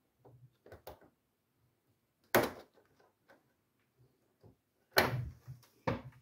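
Plastic clicks and knocks from a wiring connector being pressed and unclipped inside a fridge compartment: a few light clicks about a second in, then two sharp knocks, one a little after two seconds and one about five seconds in.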